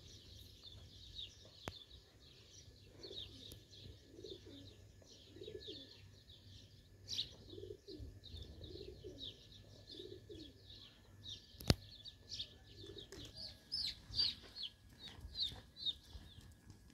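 Small birds chirping, many short high calls one after another, with a run of lower repeated cooing notes through the middle. One sharp click about three quarters of the way through.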